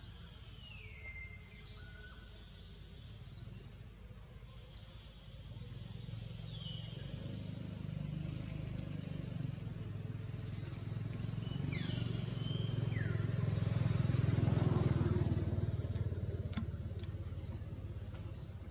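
A motor vehicle's engine hum swelling as it approaches, loudest about three-quarters of the way through, then fading as it passes. Short, high chirps that fall in pitch sound on and off throughout.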